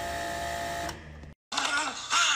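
A steady mechanical buzz with a held tone over a hiss, cutting off about a second in. After a brief silence a person starts speaking.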